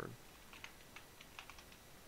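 Computer keyboard keys tapped quickly and faintly, about eight keystrokes in a little over a second, typing out a short word.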